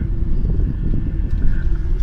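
Inside a moving car: a steady low rumble of engine and road noise, with a faint steady hum above it.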